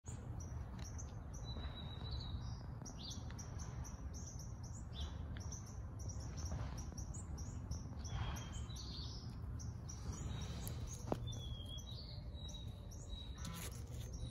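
Small birds chirping, with many short, high calls overlapping throughout, over a steady low rumble. A single sharp click comes late on.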